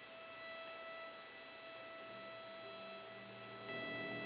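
String orchestra playing softly: a single high note held steadily, lower strings coming in with sustained notes about halfway through, and a fuller, louder chord entering near the end.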